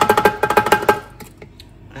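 Plastic strainer basket rattling and scraping fast against the metal bowl of a kitchen food processor as it is lifted out, the bowl ringing under the clicks. It stops about a second in.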